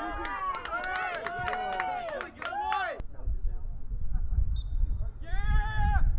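Several voices calling out and shouting over each other across a soccer field. About halfway through the sound cuts off abruptly, and a low rumble takes over with a single shout near the end.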